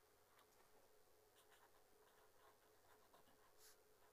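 Very faint scratching of a marker pen writing on paper in short strokes, with one brighter stroke about three and a half seconds in.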